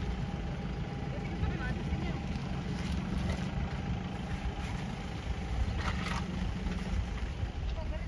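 A motor vehicle engine idling steadily, a low constant rumble with a faint steady hum above it.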